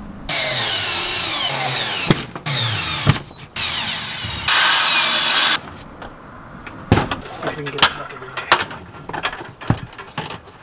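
Cordless drill running in five bursts over about five seconds, the motor whine rising and falling as the trigger is worked while screws are driven into the van's plywood wall; the last burst is the loudest. After that come scattered knocks and clicks of the plastic bucket and its fittings being handled.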